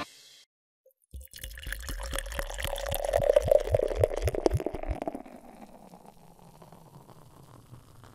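Liquid being poured, with a quick run of drips. It starts about a second in after a short silence, is loudest around the middle and dies away after about five seconds.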